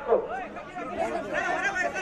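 Several people talking at once: overlapping men's voices in a loose chatter.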